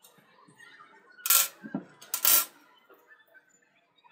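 Small metal tools and hardware set down on a glass tabletop: two sharp metallic clinks about a second apart, with a duller knock between them.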